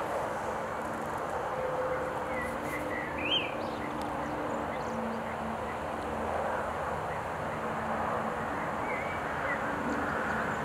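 Steady outdoor background noise with a few short bird chirps, the loudest a brief rising-and-falling call about three seconds in.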